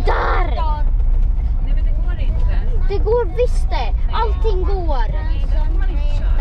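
Steady low rumble of a camper van driving, with voices talking over it.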